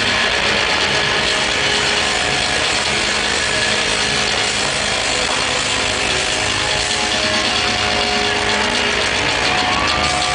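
Live rock band and crowd at a loud concert, recorded on an overloaded handheld camera microphone: a dense, distorted, unbroken wall of sustained guitar chords and cymbals, with a few held notes running through it.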